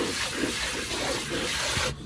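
A spray of water rinsing a dog's wet coat and splashing into a plastic tub, an even hiss that cuts off suddenly near the end.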